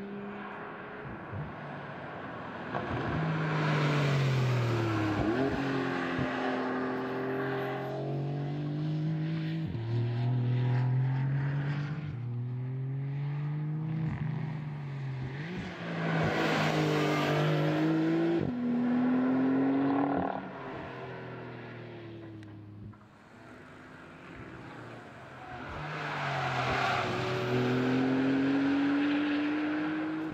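2020 Porsche 911 Carrera 4S's turbocharged flat-six engine accelerating hard in several runs. Its pitch climbs through the gears with sudden drops at each dual-clutch shift, then eases off between runs. It is loudest about a third of the way in, just past the middle, and near the end.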